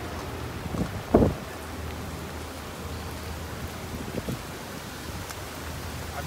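Steady hiss of rain with a low hum underneath, broken by a brief thump about a second in and a fainter one about four seconds in.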